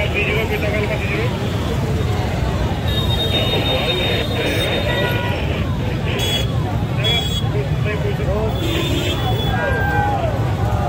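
A large street crowd talking and shouting all at once over the low running of car and motorcycle engines moving at walking pace through it.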